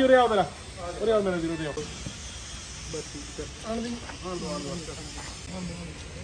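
Men's voices talking in short bursts, with a steady high hiss coming in about two seconds in.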